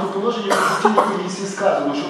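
A man speaking into a podium microphone, with a cough about half a second in.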